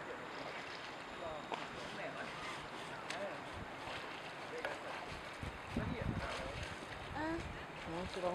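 Steady outdoor hiss with faint, distant voices and light splashing of swimmers in the water.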